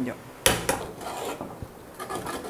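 Steel ladle stirring thick potato curry in a metal pressure-cooker pot: a sharp clink against the pot about half a second in, then a lighter clink and soft scraping along the pot.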